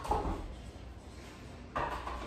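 Dumbbells being set down on a metal dumbbell rack: a clank right at the start that dies away, and another near the end.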